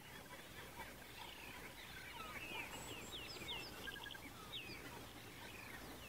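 Faint bird calls: a scatter of short, high chirps and whistles, several a second in the middle, over a low steady hiss.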